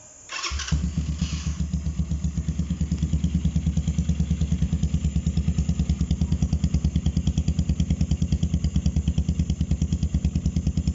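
Keeway Cafe Racer 152's single-cylinder four-stroke engine starting within the first second, then idling steadily with an even, pulsing beat through a freshly fitted chrome bullet-style muffler.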